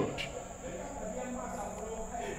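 A pause in a man's amplified speech: faint room sound with a steady, high-pitched electronic tone running under it, as his last word fades at the start.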